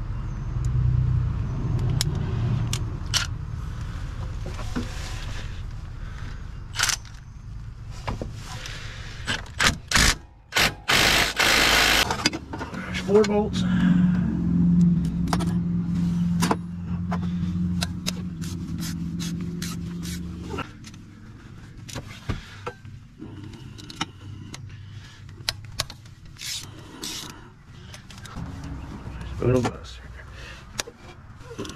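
Metal clicks and clinks of a socket and wrench working the A/C compressor's mounting bolts, with a loud rushing burst about eleven seconds in. Under them runs a steady low hum that stops about twenty seconds in.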